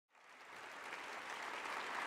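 Audience applauding, fading in and growing steadily louder.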